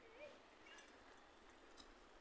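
Near silence: faint outdoor ambience with a few faint, short chirps.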